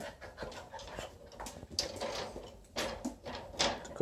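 Faint panting from puppies in short, irregular breathy bursts, with light scuffling and small clicks as they play with a hand.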